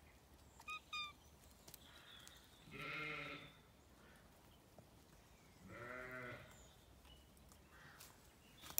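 Sheep bleating twice, two separate calls each under a second long, about three seconds apart.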